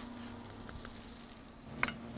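Shrimp, tomatoes and vegetables sizzling steadily in a stainless steel frying pan on an induction burner, just after the pan was deglazed with lime juice.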